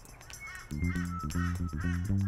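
A lorikeet calling in a quick run of short chirps, over background music whose bass beat comes in just under a second in.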